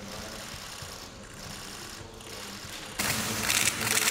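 Low room murmur, then about three seconds in a sudden, louder rapid clatter of many still-camera shutters firing in quick succession.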